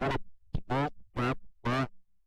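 A man speaking in short, evenly spaced syllables, with a faint steady hum beneath the gaps.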